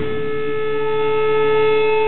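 Amplified electric guitars ringing out on a held chord, a loud steady drone with a higher tone joining under a second in.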